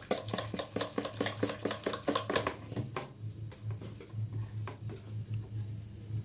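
Metal wire whisk beating a creamy mayonnaise dressing in a plastic bowl: quick, even clicks of the wires against the bowl, about five or six a second. The strokes turn sparser and quieter about halfway through, over a faint steady low hum.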